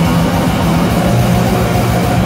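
Black metal band playing live at full volume: heavily distorted guitars and bass held over very fast, continuous drumming.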